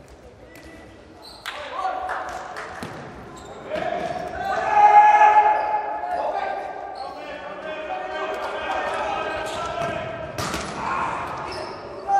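Futsal ball being kicked and bouncing on the indoor court, a few sharp thuds, under players' shouts, all echoing in a large sports hall.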